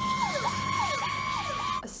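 Fire engine siren: a steady high tone under a repeated falling yelp, about three sweeps a second, which cuts off suddenly near the end.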